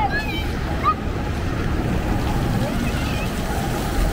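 Ground-nozzle fountain jets spraying and splashing onto wet stone paving, a steady rushing noise, with wind rumbling on the microphone. Short distant voices cry out near the start and about a second in.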